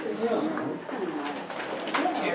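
Indistinct low talking in the room, words not made out.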